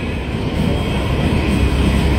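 Low, steady rumbling noise, growing heavier in the lowest register in the second half.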